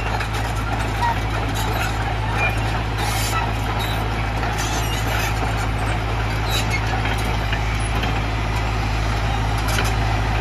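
JCB JS81 tracked excavator's diesel engine idling steadily, a constant low drone with no change in speed.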